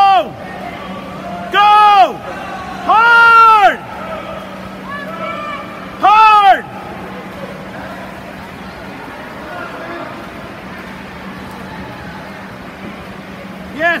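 A person close to the microphone yells cheers to a racing swimmer: four loud, drawn-out shouts in the first seven seconds, the third held longest. Under them is the steady din of the crowd at the indoor pool, with a low steady hum. A short shout comes right at the end.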